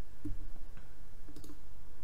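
A few faint computer mouse clicks over a low steady background hum.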